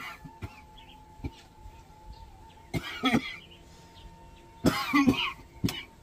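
A man coughing in two short fits, the first about three seconds in and a louder one near five seconds, with a few light knocks between.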